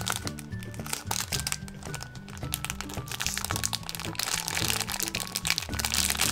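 Background music with plastic packaging crinkling as it is handled and a squishy toy is worked out of its bag. The crinkling gets busier and louder in the second half.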